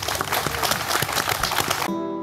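Applause: many people clapping together, dense and steady.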